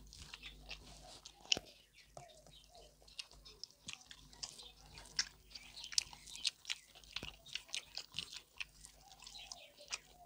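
Close-miked chewing of pork belly and rice: a run of many short mouth clicks, thickest in the second half, with one sharper click about a second and a half in.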